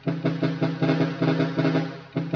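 A pair of chrome trumpet horns sounded by a Cicada horn relay, chopped into a rapid rhythmic stutter of short blasts, about six or seven a second, at one unchanging pitch.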